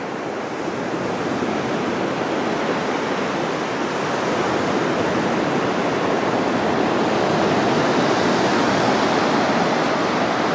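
Steady, even rush of sea surf washing on the shore, growing a little louder towards the end.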